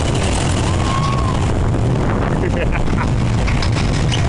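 Crazy Mouse coaster car rolling along its steel track: a loud, steady rumble with wind noise on the microphone. A rider laughs at the start.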